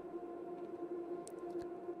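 A soft, sustained synth pad from the Diva software synthesizer holding a steady chord, playing back as it is resampled. A few faint clicks come a little past a second in.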